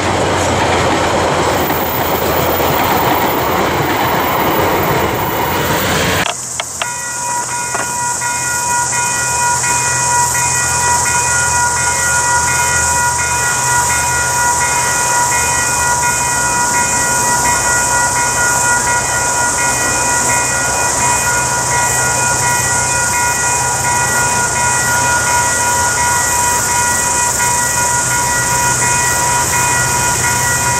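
Railway passenger carriages rolling past with a dense rattle of wheels on rail, cut off abruptly about six seconds in. After that comes a steady high-pitched hiss with several steady ringing tones above a low hum, as a diesel-hauled train approaches in the distance.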